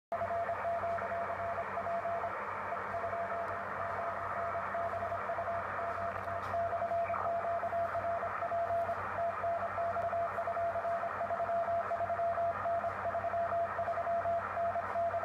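A Morse code (CW) signal on the 10-metre (28 MHz) amateur band, coming from a shortwave transceiver's speaker. A single steady tone is keyed on and off in dots and dashes over a constant bed of band hiss.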